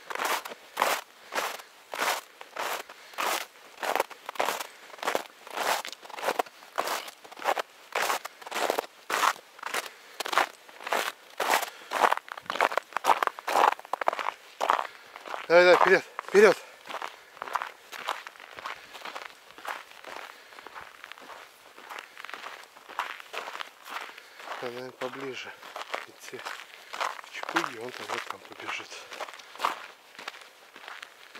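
Footsteps crunching in snow at a steady walking pace, about two steps a second, from someone walking in sneakers; the steps grow fainter and less regular in the second half. About halfway through a voice calls out briefly and loudly, and a couple of quieter voice sounds follow near the end.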